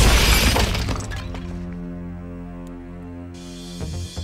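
A loud crash with shattering, fading over about a second as a body is thrown into the wall, followed by a held low chord from the film score with a short hiss near the end.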